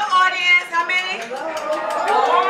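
High-pitched voices exclaiming in excitement, without clear words.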